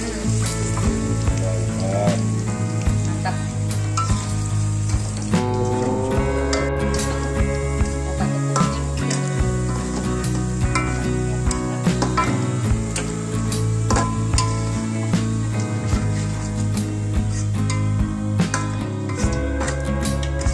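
Sliced wild mushrooms sizzling in hot oil in a wok, being fried until fairly dry, with a spatula scraping and stirring them in short strokes throughout. Background music plays along with it.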